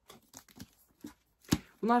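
A book being handled and turned in the hands: a few light clicks and short rustles of the cover, with a sharper click about one and a half seconds in.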